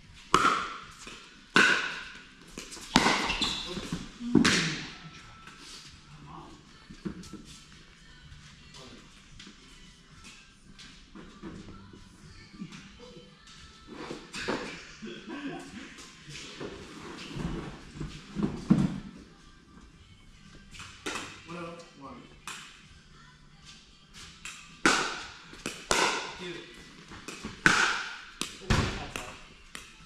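Pickleball rally: paddles hitting a hollow plastic ball, each hit a sharp pop. Four hits come about a second and a half apart in the first few seconds, a quieter stretch of softer knocks follows, and another run of hits comes near the end.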